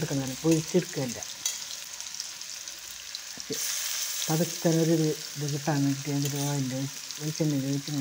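Hot oil sizzling steadily as fish pieces fry in a small kadai, with a spatula stirring and turning them. The sizzle flares up briefly about three and a half seconds in, and a voice talks over it at times.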